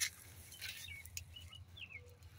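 A few faint, short bird chirps, each falling in pitch, with a couple of light clicks.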